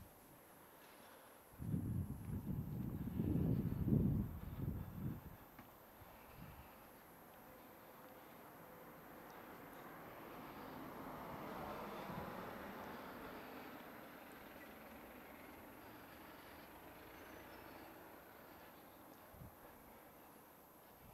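Wind buffeting an unshielded microphone, a few seconds of choppy low rumble early on. Then a vehicle passes, its rushing noise slowly swelling to a peak and fading away.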